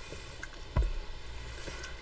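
Quiet handling of soft minky fabric on a table, with a single low thump a little before the middle.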